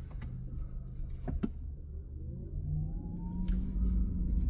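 Inside the cabin of a 2020 Porsche Taycan Turbo pulling away: a low road rumble and hum, with a faint electric-drive whine rising in pitch from about two seconds in as the car gathers speed. A couple of light clicks about a second in.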